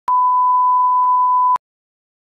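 Line-up test tone that goes with colour bars: one steady, loud beep at a single pitch, lasting about a second and a half, with a click as it starts and as it cuts off.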